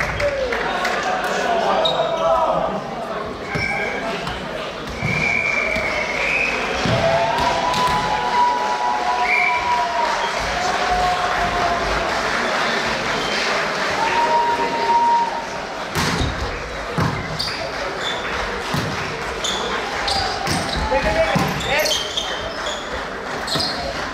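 Volleyball play echoing in a sports hall: the ball smacking off hands and floor again and again, sneakers squeaking on the court, and a steady hum of players' and spectators' voices. The sharpest smack comes about two-thirds of the way through.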